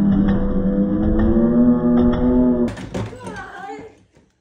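Loud music with a kick drum thumping about once a second under a long held tone that rises slightly; it all cuts off suddenly near three seconds in, followed by brief shouting.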